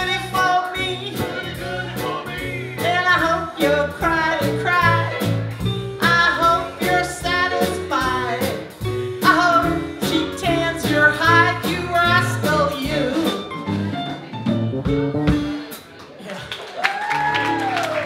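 Live band playing a song: a woman sings lead into a microphone over keyboard, a drum kit and electric bass.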